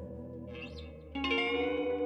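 Electric guitar played through a handmade delay pedal: a chord fades away, then a little over a second in new notes are struck and ring on with echo.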